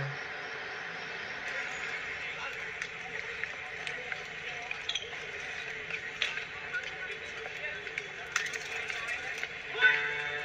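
Outdoor ambience playing back from a music video's opening: a steady hiss with scattered small clicks and knocks. The song's music comes in sharply near the end.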